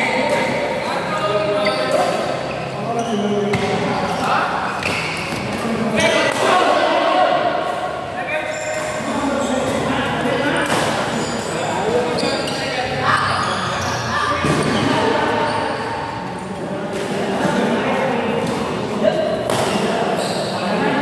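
Badminton rackets striking a shuttlecock during a rally: a series of sharp hits at uneven intervals, ringing in a large hall, over background voices.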